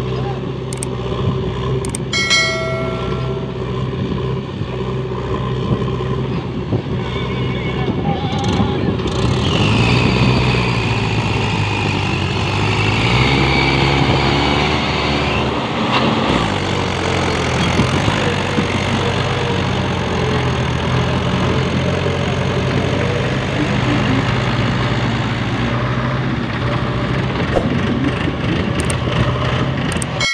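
Mahindra 585 DI four-cylinder diesel tractor engine working under load as it pulls a fully loaded sand trolley away. The engine note rises about ten seconds in.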